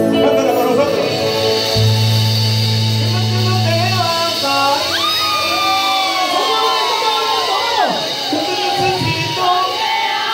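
Live band music: electric bass and synthesizer keyboards, with a man singing into a microphone. A long low bass note is held early on, and voices from the crowd shout and whoop over the music in the second half.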